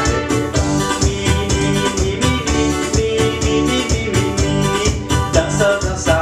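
Upbeat forró dance music played on an electronic keyboard, with a melody over a steady, evenly repeating drum beat.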